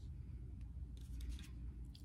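Faint rustling of handwritten paper slips as a hand picks one from a loose pile, a few soft rustles in the second half, over a low steady room hum.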